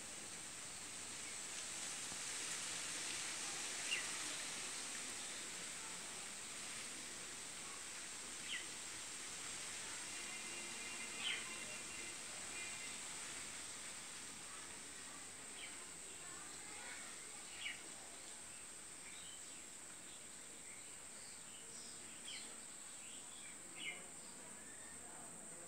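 Faint ambient background: a steady high hiss with a few short chirps every few seconds.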